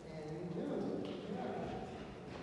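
Indistinct speech, low voices talking in a large room without clear words.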